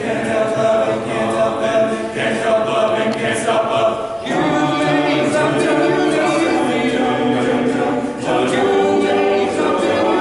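Men's choir singing a cappella in close harmony, holding sustained chords that change about four and eight seconds in.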